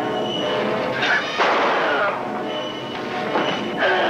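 Dramatic background music over a fistfight scuffle. Loud thumps and knocks of the struggle break through the music, with the biggest about a second and a half in and another near the end.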